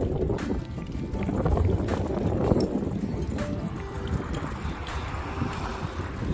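Wind buffeting the microphone, a steady low rumble, while riding a wheelchair handbike along a paved path, with music in the background.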